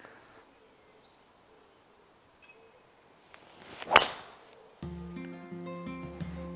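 A golf driver swung at a teed ball: a short rising swish, then one sharp crack of clubface on ball about four seconds in. Background music starts just under a second later.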